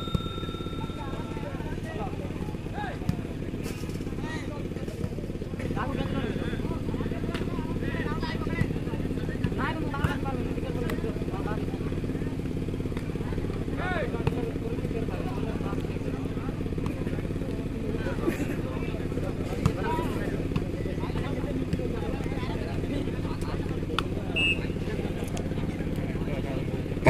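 Indistinct chatter and calls of a seated crowd of spectators over a steady low hum, with a few brief faint knocks.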